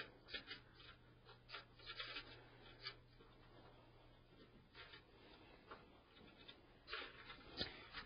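Faint scratching and small clicks of a screwdriver backing a brass screw out of a PC case's expansion-slot bracket, busiest in the first few seconds and again near the end, over a steady low hum.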